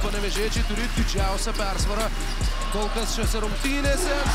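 Basketball dribbled on a hardwood court, one bounce roughly every 0.6 seconds, about seven bounces in all.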